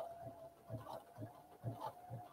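Baby Lock Sashiko 2 sewing machine stitching through a quilt sandwich: a faint steady hum with soft, regular needle strokes, a few a second.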